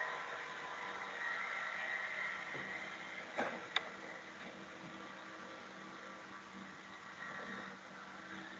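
Faint steady background hiss and low hum of a computer microphone in a small room, with two short clicks about three and a half seconds in.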